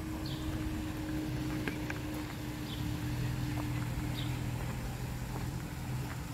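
Outdoor garden ambience: a steady low hum under a bird that calls a short high note every second or two.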